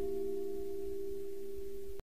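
The last acoustic guitar chord of the closing music ringing out and slowly fading, only a few low notes still sounding; it cuts off suddenly at the very end.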